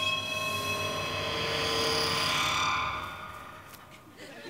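Theatrical magic-spell sound effect: a sustained chord of high ringing tones over a hiss, swelling and then fading away about three seconds in. It marks the love-charm being cast on the sleeper's eyes.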